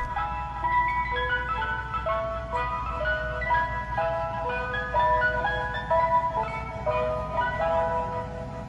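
Ice cream truck chime playing a jingly melody of single clear notes, over a low steady hum.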